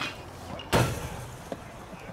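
One sharp crack of a pitched baseball's impact about three-quarters of a second in, with a brief trailing ring, after a shorter click right at the start.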